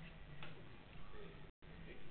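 Faint room ambience with a steady low hum and a low murmur of voices, one sharp click about half a second in, and the sound cutting out completely for a moment about a second and a half in.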